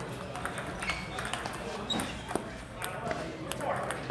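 Table-tennis balls clicking off paddles and the table in an irregular run of sharp ticks, from this table and the tables around it, with people talking in the background.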